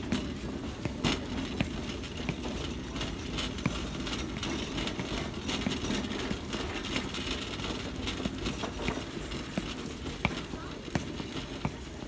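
Footsteps of loose, unlaced Red Wing leather work boots on a hard terrazzo floor: irregular knocks and scuffs as the wearer walks.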